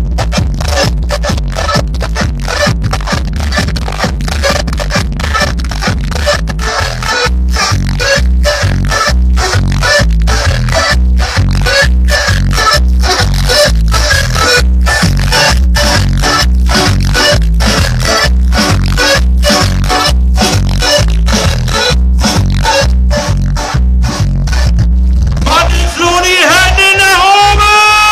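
Loud electronic dance music with a steady heavy kick-drum beat, about two beats a second. Just before the end it changes, with rising pitched glides coming in.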